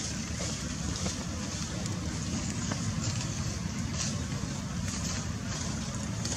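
Steady low rumble and hiss of outdoor background noise, with a few faint clicks.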